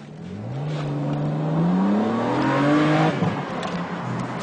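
BMW Z4 sDrive35i's 3.0-litre twin-turbo straight-six accelerating, its note rising steadily for nearly three seconds, then falling back to a lower, steady pitch about three seconds in.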